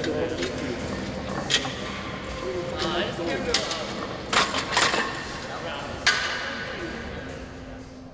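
Weight-room ambience: a murmur of background voices, broken by about half a dozen sharp metal clanks and clinks of barbell, plates and rack, some with a short ring.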